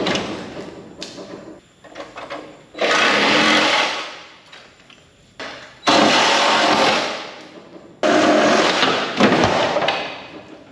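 Power saw cutting in four bursts of about a second each; each burst starts abruptly and winds down as the trigger is let go.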